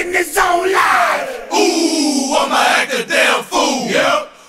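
Isolated hip-hop vocals with no beat: several voices shouting and chanting together in crunk style, held shouts sliding down in pitch.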